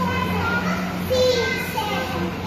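Many children's voices chattering and calling out at once in a hall, several overlapping, over a steady low hum.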